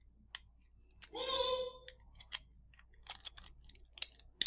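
Light clicks and taps of plastic on plastic as a small circuit board is pushed and worked into a 3D-printed plastic enclosure by hand. There is one click early and a quick run of clicks in the second half, with no single firm snap.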